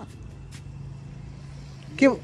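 A steady low mechanical hum over faint background noise, with a light click about half a second in.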